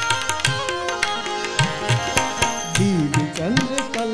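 Two tablas played together in an instrumental passage of a Shiv bhajan, with quick sharp strokes over a held melodic accompaniment. Near the end the bass drums' pitch glides up and down in several swoops.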